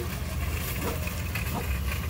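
Low, steady rumble of car engines idling in a queue.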